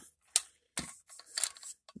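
Hands handling a plastic handheld rocket signal flare and its cap: one sharp click near the start, then light scattered plastic scraping and rustling.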